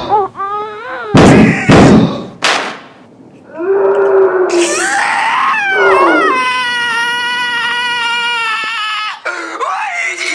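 A person crying and screaming, with short sharp shrieks in the first two seconds, then a wavering wail that settles into one long high-pitched scream held for about three seconds.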